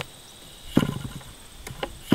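Super Tigre G75 two-stroke glow engine being primed by flipping its propeller by hand with a gloved hand over the carburettor, each flip drawing fuel in. One short burst of sound comes about three-quarters of a second in, with fainter clicks near the end.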